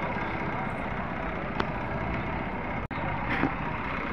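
Steady background noise of an outdoor livestock market, like distant traffic, with faint voices under it. The sound cuts out for an instant about three seconds in.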